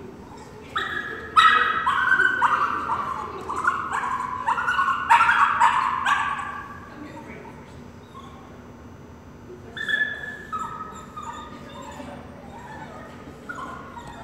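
A dog whining and yipping in a quick run of short, high-pitched cries for about five seconds, then a few more cries later on.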